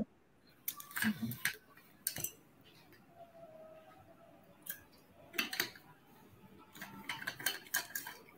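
Faint, scattered clicks and knocks of a stainless steel water bottle being handled and drunk from, with a few brief voice sounds mixed in.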